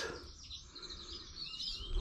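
Small birds chirping faintly: a run of short high notes with a brief falling call near the end, over a low rumble.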